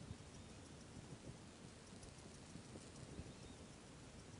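Faint patter and scattered light ticks of fine iron filings shaken from a small jar onto a perspex sheet.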